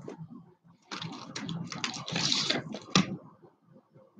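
Strands of shell and turquoise beads clattering and rattling against each other as they are handled and lifted from a tray, with one sharp click near three seconds in.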